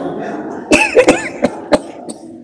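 A person coughing: a quick run of about five short, sharp coughs with throat-clearing, starting a little under a second in and over by about two seconds.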